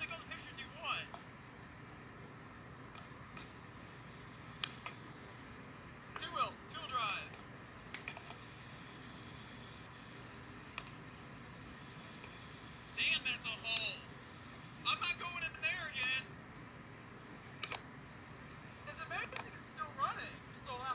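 Faint, indistinct voices in short scattered bursts over a low steady hum, heard through a computer's speakers during video playback.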